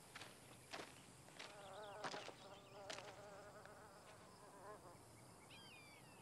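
Faint quiet outdoor ambience: a flying insect buzzes past for about three seconds, wavering in pitch. A few soft steps sound early on, and a bird gives a short chirp near the end.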